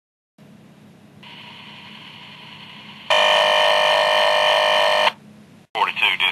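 Two-way radio audio: a steady hiss with a faint tone joining about a second in. Then comes a loud, steady electronic tone for about two seconds that cuts off sharply, leaving the hiss.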